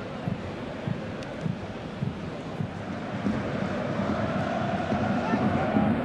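Pitch-side sound of a football match played in an empty stadium: a steady open-air hiss with players' distant voices calling, growing louder in the second half.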